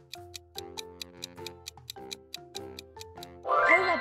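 Quiz countdown-timer sound effect ticking quickly, about six ticks a second, over light background music. A voice comes in near the end, louder than the ticking.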